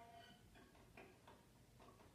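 Near silence: a viola note dies away at the very start, then a few faint, irregular ticks.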